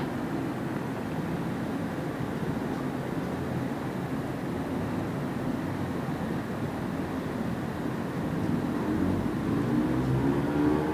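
Steady low rumble of background noise, getting a little louder near the end.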